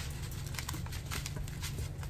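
Small plastic bag being opened and crushed tempered glass pieces tipped into a gloved palm: a sharp click at the start, then scattered small ticks and rustling, over a steady low hum.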